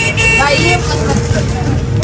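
Busy shop-and-street background: voices talking over a steady low rumble of traffic, with a faint horn-like tone that fades out about a second in.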